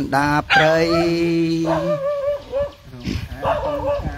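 A voice chanting in Khmer, holding one long steady note from about half a second in, then sliding into a wavering, drawn-out note.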